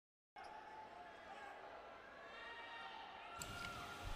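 Faint basketball arena sound: distant voices over a low crowd murmur, a little louder near the end.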